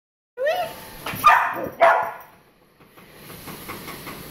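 Young dog barking at shadows on the wall: a short rising yip, then two loud barks within the first two seconds, followed by faint clicks.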